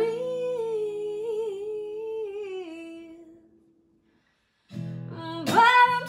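A woman's voice holds one long, slightly wavering sung note over a ringing acoustic guitar chord; both fade out to a brief silence about three and a half seconds in. About a second later the acoustic guitar strumming comes back in, and a louder sung line follows.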